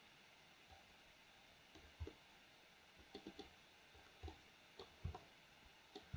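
Near silence broken by a scattering of faint clicks from a computer mouse, starting about two seconds in.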